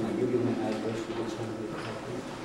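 Low, indistinct voices of people talking quietly in a room, with no clear words.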